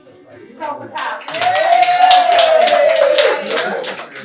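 A small group clapping, starting about a second in, with one voice holding a long call over the applause that slowly falls in pitch.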